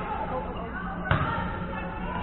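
A volleyball struck once, a sharp smack about a second in, over a background of players' and spectators' voices.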